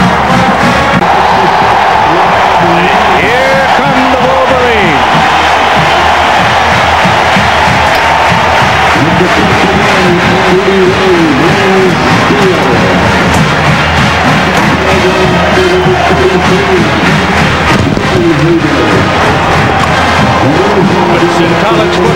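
A college marching band's brass playing over a large stadium crowd cheering.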